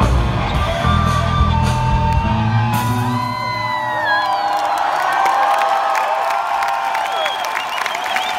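Live rock band with heavy bass and drums playing the final bars of a song, the band stopping about three and a half seconds in. After that a large arena crowd is cheering and whooping.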